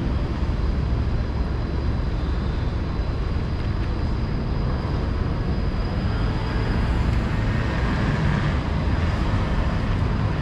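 City street ambience at a busy intersection: a steady low rumble of road traffic and passing vehicles, with no single sound standing out.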